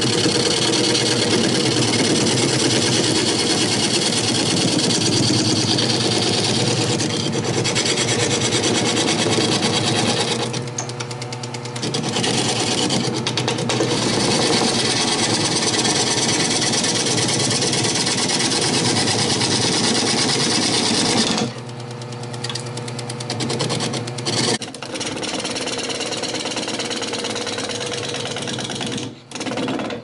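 Wood lathe running while a turning gouge cuts a freshly dug, green sassafras root blank: a loud steady cutting noise over the motor's hum. It eases off briefly about ten seconds in and drops to a quieter level about two-thirds of the way through.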